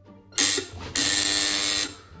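Recorded intercom buzzer played through a small JBL portable speaker held close to the ear: a short buzz, then a longer steady buzz of about a second that cuts off.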